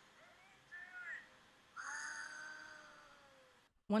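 A high, childlike cartoon voice making a few short squeaky chirps. Then one long awed "ooh" that falls slightly in pitch, in a faint soundtrack.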